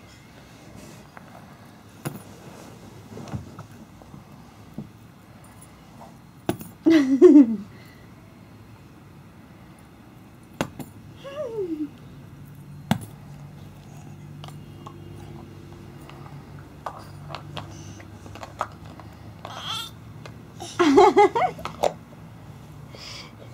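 Light, scattered clicks and clinks of small objects being handled, with a toddler's short falling-pitch vocal sounds about seven and eleven seconds in and a brief burst of babble near the end.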